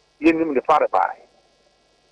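Brief speech of a few words, cut off to a narrow, phone-like range, followed by a pause in which only a faint steady hum of line noise remains.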